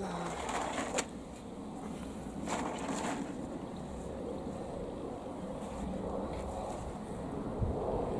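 Rustling and a few light knocks from potted tomato plants and their plastic tray being handled and lifted out of a cold frame, with a short burst about a second in and another about two and a half seconds in, over a steady low rumble.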